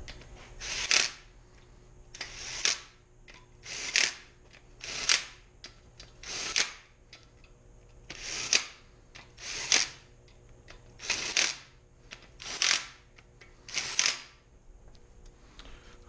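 Cordless impact driver rattling main bearing cap bolts loose from a V8 engine block, one bolt after another. About ten short bursts, each building up and then cutting off, roughly one every second and a half.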